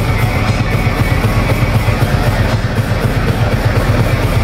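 Live heavy metal band playing: distorted electric guitars and bass over fast, steady drumming, loud and continuous.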